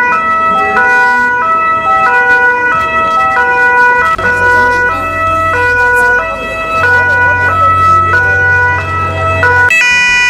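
Loud electronic tones stepping back and forth between pitches about every half second over one steady high tone, with a low hum that joins about four seconds in and stops just before the end.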